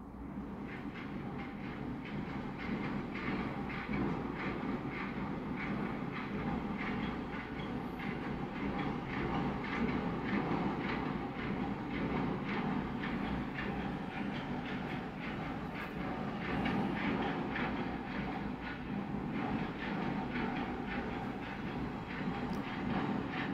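A steady mechanical rumble with a fast, regular clatter running through it.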